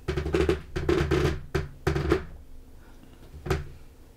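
Drum hits in quick flurries over the first two seconds, then a single hit about three and a half seconds in.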